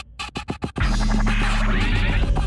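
Electronic club music in a DJ mix: the track drops out to a few sharp, separate hits, then the full beat with deep bass comes back in just under a second in.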